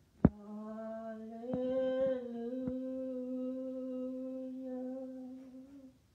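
A single voice humming or singing one long held note, which steps up slightly in pitch about a second and a half in and fades out near the end. A sharp click, the loudest sound, comes just before the note begins.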